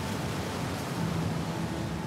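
Steady rushing hiss of breaking surf as a board rides a wave, with faint music underneath.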